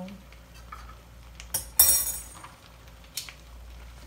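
Kitchen tongs clattering against a skillet: a few sharp metallic clinks, the loudest about two seconds in with a brief ring.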